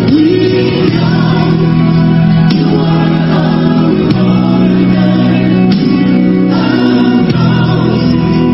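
Gospel music with a choir singing long held notes.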